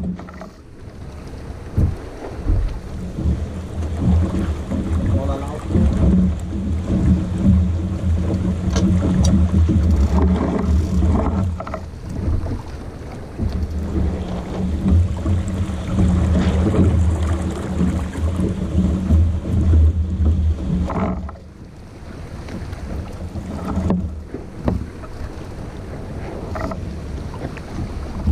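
Wind buffeting the microphone and water rushing past the hull of a sailboat under way, a loud, steady low rumble that drops away briefly near the start and again about three-quarters of the way through.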